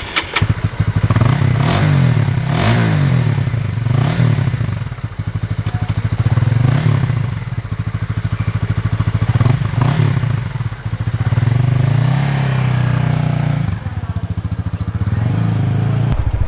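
Honda CBR150R's single-cylinder engine running just after being started, revved several times with the throttle so its pitch rises and falls between spells of idle.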